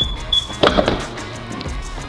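Background music, with a couple of sharp metal knocks about two-thirds of a second in: a small hammer knocking the tight top pump collar of a Graco ES1000 line-marking machine loose.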